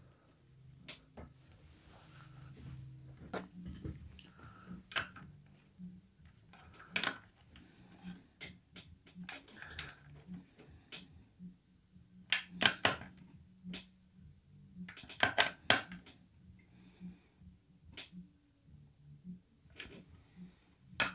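Irregular small metallic clicks and ticks as a hand tool tightens the nuts on new RCA jacks in the steel rear panel of a 1966 Fender Vibrolux Reverb amplifier chassis. There are quick runs of several clicks about two thirds of the way through.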